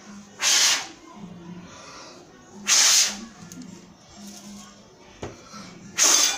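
A person blowing hard puffs of air at a small coin, trying to push it along toward a plate without touching it. Two short puffs come about two seconds apart, and a third starts right at the end.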